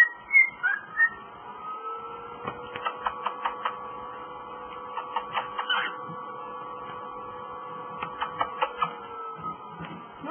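Cockatiel giving a few short chirps about a second in and one rising chirp midway, with three runs of quick clicks over a steady hum.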